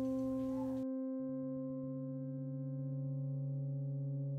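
Background music: a drone of steady, sustained electronic tones, with a lower note joining a little after a second in. The busier room and guitar sound cuts out just before that.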